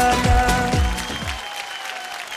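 The closing bars of a Bhojpuri film-song dance track, with a steady bass-drum beat that stops about one and a half seconds in, and applause heard with it.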